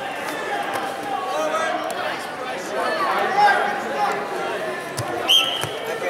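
Many overlapping voices of a gym crowd. About five seconds in there is a thud, then a short blast of a referee's whistle.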